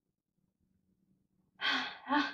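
Near silence, then about one and a half seconds in a woman lets out a sigh.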